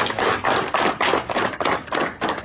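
A group of people applauding: many hands clapping at once in a dense, uneven patter.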